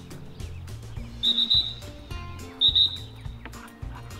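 Dog-training whistle blown twice, each a short, high, steady double pip, about a second and a half apart.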